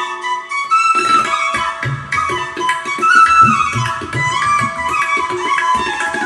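Bansuri (Indian bamboo flute) playing a gliding, ornamented melody, with tabla joining about a second in: crisp strokes and deep, pitch-bending bass strokes from the bayan drum under the flute.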